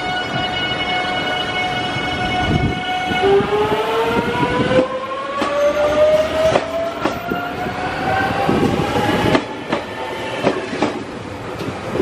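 JR Central 383-series Wide View Shinano electric train moving off along the platform. A steady electric whine from its traction motors changes about three seconds in to a whine rising steadily in pitch as the train gathers speed. From about halfway, the wheels click over rail joints.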